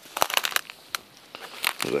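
Dry, frosty grass crunching and crackling underfoot and against legs as someone walks through it: a quick cluster of crackles at the start, a single click about a second in, and more crackles near the end.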